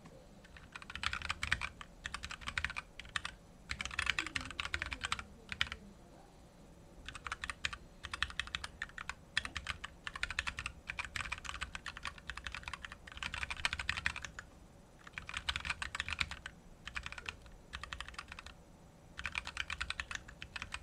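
Typing on a computer keyboard: quick runs of key clicks, each lasting a second or two, broken by short pauses.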